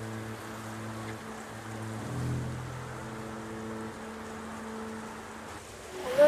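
Low, droning background music: a few held notes that drop out and return, with a deeper note coming in about two seconds in, over a steady hiss.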